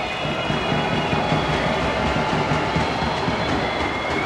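Arena crowd keeping up a loud, steady din with high whistles during an opposing player's free throw: the home fans putting pressure on the shooter.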